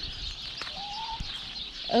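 A hen gives one short, soft rising call about a second in, over a faint steady background hiss.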